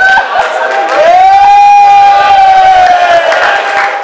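A person's long drawn-out shout held on one high pitch, starting about a second in and lasting a little over two seconds, rising at the start and sliding down at the end, over crowd noise.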